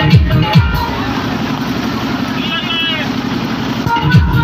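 Loud DJ electronic dance music from a sound system. The kick-drum beat drops out about a second in, leaving a steady break with a brief wavering voice a little past halfway, and the beat comes back in just before the end.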